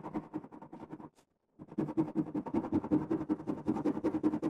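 Wax crayon scribbling rapidly back and forth on paper with light pressure, about eight strokes a second, breaking off for half a second a little after one second in and then going on.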